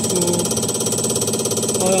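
Common rail injector test bench running an injector test: a steady, rapid, even mechanical buzzing rattle with a thin high whine running through it.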